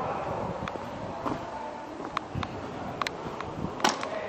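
Farm tractor engine running as the tractor passes close by, with scattered sharp clicks and one louder crack near the end.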